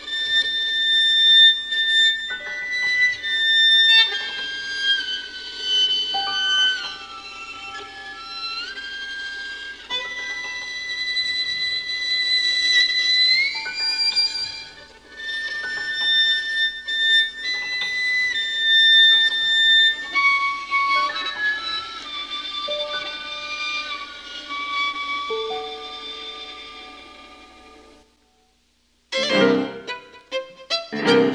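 Solo violin playing a slow, expressive melody of long held notes with slides from note to note. The playing fades away near the end, breaks off for about a second, then starts again.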